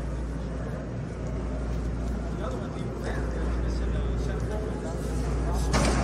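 Indoor show-floor ambience: a steady low rumble under faint, indistinct voices in the distance. A brief louder noise comes near the end.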